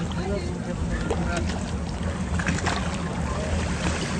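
Steady low hum of a boat's motor running, with faint voices of people in the water.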